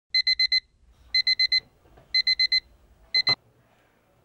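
Electronic bedside alarm clock beeping in quick bursts of four, about one burst a second. Partway through the fourth burst the beeping stops with a click as the clock is switched off by hand.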